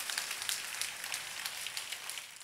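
Small audience applauding, a dense patter of hand claps.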